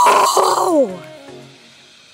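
A loud excited yell from a young man, falling in pitch and breaking off after about a second, with quiet background music continuing underneath.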